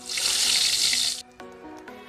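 Boiled eggs sizzling in hot oil in a kadai: a loud hiss that lasts about a second and cuts off suddenly, over background music.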